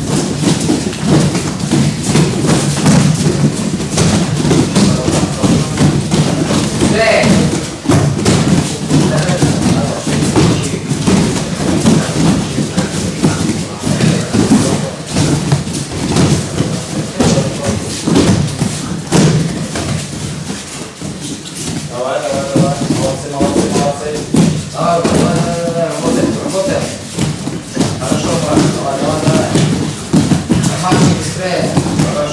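Many bare feet thudding on judo tatami mats as a group of children jump and run around the hall, a busy, irregular patter of thumps. Voices call out now and then, and longer stretches of voice come in a little after the middle.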